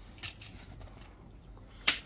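Plastic basket halves of a toy ball being handled and fitted together: faint rustling, a small click about a quarter of a second in and a sharper plastic clack near the end as the two halves meet.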